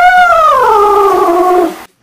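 Domestic cat meowing: one long drawn-out meow that falls steadily in pitch and cuts off abruptly near the end.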